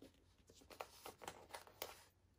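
Faint rustling and light ticks of a paper sticker sheet being handled, with stickers peeled off and pressed onto a magazine page: several small, short sounds spread through the second half.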